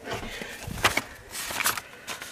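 Handling noise from a hand-held camera being moved around a cluttered workbench: low rustling with a few sharp clicks and knocks.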